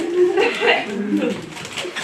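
A few people's voices in a small room, talking and laughing, with a burst of high, excited voice about half a second in.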